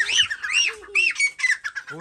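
Francolin (teetar) calling: about five short call notes in quick succession, each rising and falling in pitch.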